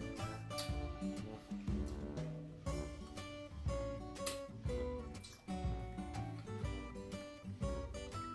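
Background music of acoustic guitar, picked and strummed notes in a gentle, steady pattern.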